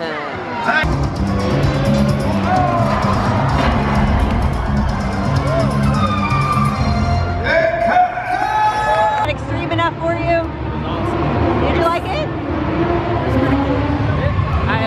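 Stunt-show sound played over loudspeakers: music and an amplified voice, with a car engine running underneath.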